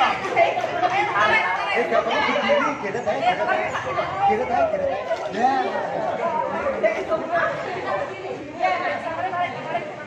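A group of people talking and calling out over one another: steady, overlapping chatter with no single clear speaker.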